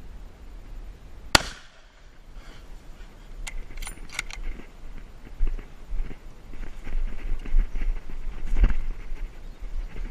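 A single rifle shot from a bolt-action Remington 700 in .30-06 just over a second in, followed about two seconds later by a few quick metallic clicks as the bolt is worked. Irregular footsteps through dry grass and leaf litter follow.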